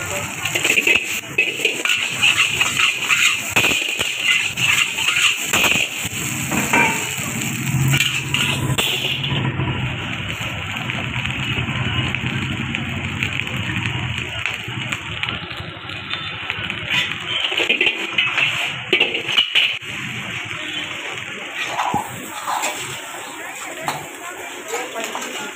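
Steel spatula scraping and knocking against an iron wok as rice is stir-fried, with repeated clanks over the steady hiss of a gas burner.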